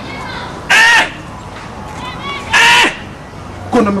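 A bird cawing: two loud calls, each about a third of a second long and about two seconds apart.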